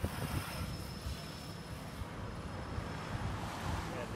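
Wind buffeting the microphone in uneven low gusts, over a steady outdoor noise haze.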